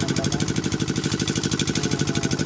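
A small engine running steadily at idle, with a fast, even beat.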